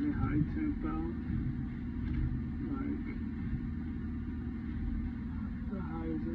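Steady low drone of mechanical-room machinery such as pumps running, with faint voices near the start and the end.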